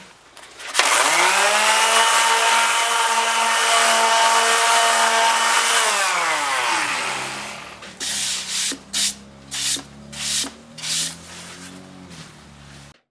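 Electric palm sander on a carved mandolin top: the motor spins up about a second in, runs at a steady whine for about five seconds, then winds down. After it stops, about six short hissing blasts of air follow as sawdust is blown off the top.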